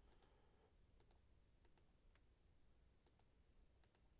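Near silence, with faint computer mouse clicks scattered through it, several of them in quick pairs.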